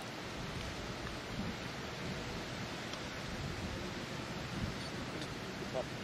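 Steady, faint outdoor ambience of a golf course: an even background hiss with no distinct sounds standing out.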